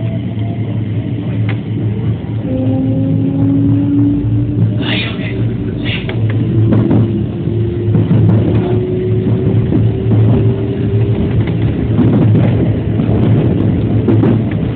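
JR West 207 series electric train running, heard from inside the front cab: a steady low hum of the running gear with a motor whine that rises slowly in pitch, and wheels clicking over rail joints and points, with two short sharp noises about five and six seconds in.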